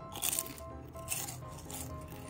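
Crispy fried chicken skin crunching as it is bitten and chewed, three crunches in two seconds, over quiet background music.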